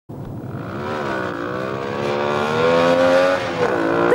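A motor vehicle's engine accelerating: its pitch climbs steadily for about two seconds, then drops just before the end.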